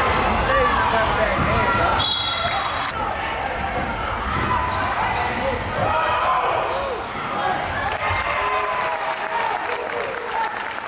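A basketball being dribbled on a gym's hardwood court during live play, under the voices of players and spectators in the large hall.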